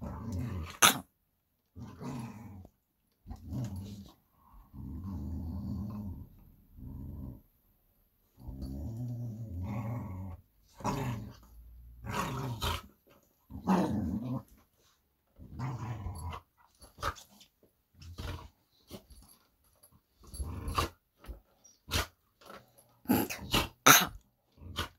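Pit bull growling in repeated low rumbles, some held for two or three seconds, with a few short sharp clicks in between: a dog guarding food from another dog.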